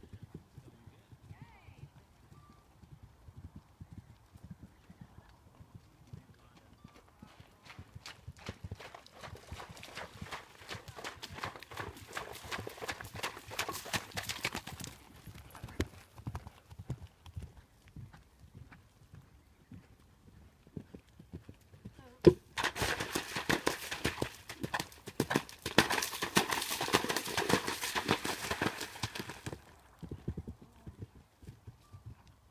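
Horse's hoofbeats as it canters over turf: a run of quick beats building in the middle, then a louder stretch in the last third, opened by one sharp knock.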